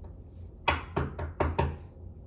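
A deck of tarot cards knocked against a wooden tabletop: about five sharp knocks in quick succession in the second half.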